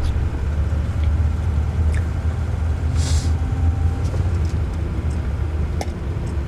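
Steady low rumble of a moving vehicle heard from inside the cab: engine and road noise, with a brief hiss about halfway through.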